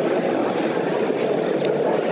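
Steady background noise of a busy exhibition hall, with no single voice standing out.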